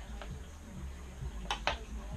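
Milk being drunk straight from a plastic cereal bowl, with two short, sharp clicks about a second and a half in, over a steady low hum in the room.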